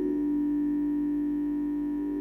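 Red Nord Stage 2 keyboard playing a soft sustained pad chord, held steady without change.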